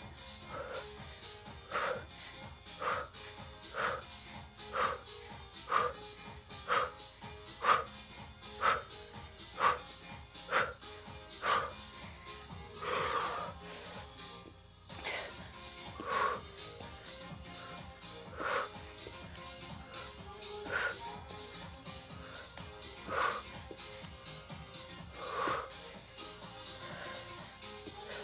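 A woman's hard, forceful breathing during plank jacks: a sharp exhale about once a second, slowing to a few irregular breaths about halfway through as she tires and pauses, over background music.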